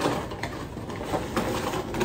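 A cardboard shipping box being opened by hand: rustling and tearing of the cardboard and packaging, with a few sharp crackles.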